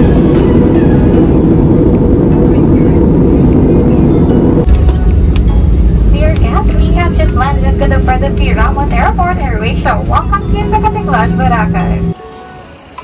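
Airliner cabin noise, a loud steady rush heard through the window seat in flight. About five seconds in it changes sharply to a deeper rumble as the plane rolls down the runway after landing, with voices over it in the second half and a steady engine hum near the end.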